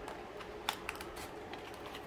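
Small clicks and taps of cardboard model parts being pushed and folded by hand, with two sharper clicks a little under a second in.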